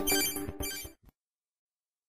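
Electronic ringing tones, a sound effect at the tail of the recorded exercise audio, cutting off about a second in.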